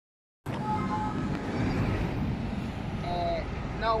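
City road traffic running steadily with wind on the microphone, with a few brief high tones about a second in and a short word spoken at the end.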